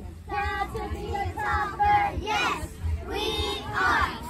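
A group of young girls chanting a cheer in unison, drawn-out sing-song phrases with a few sharper shouts near the end.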